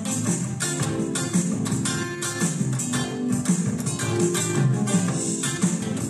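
Electric guitar playing a rhythm part: a quick, even run of strummed chords, its sound given a slightly crisper edge by channel EQ.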